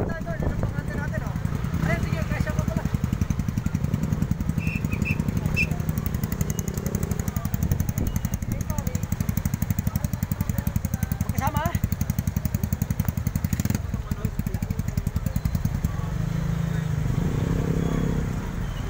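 Motorcycle engine idling with a steady, rapid low pulse; near the end it gives way to a smoother, steadier hum.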